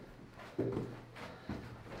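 Footsteps and scuffs on a rocky dirt floor as people walk through a narrow mine tunnel, with a couple of sharp steps.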